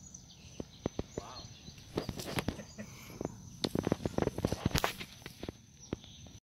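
Footsteps on a concrete path, heard as scattered knocks and scuffs that come thickest about four seconds in, over a faint steady high tone.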